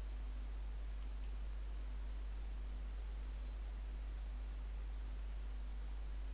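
Low steady electrical hum with faint hiss on a silent phone line, and a single faint short high chirp about three seconds in.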